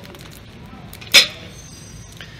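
A single short, loud breathy whoosh about a second in, over a quiet background.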